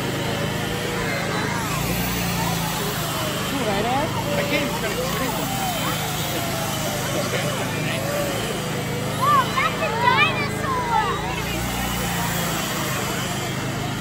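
Power tool running steadily as it cuts into a block of ice, under the chatter of a surrounding crowd. A few children's voices call out louder about two-thirds of the way through.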